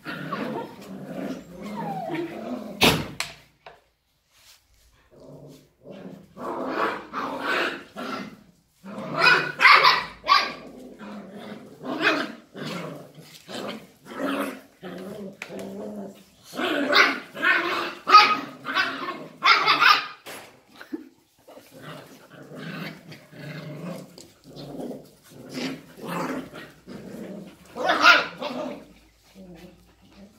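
Border Collie puppies play-fighting, growling and barking in irregular bursts, with a brief lull and a sharp knock about three seconds in.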